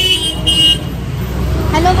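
Vehicle horn sounding in street traffic, a steady high tone that cuts off under a second in, over a constant low traffic rumble.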